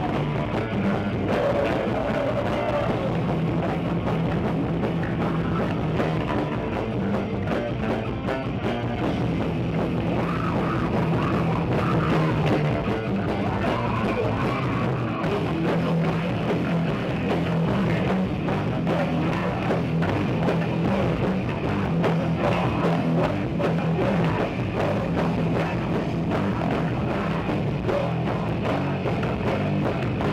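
Live old-school thrash metal band playing at full volume: distorted electric guitars, electric bass and a pounding drum kit, in one continuous dense wall of sound.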